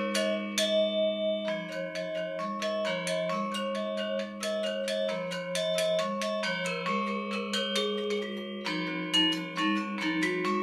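Balinese gamelan music on bronze metallophones: quick runs of struck, ringing notes over a slower melody of sustained low tones.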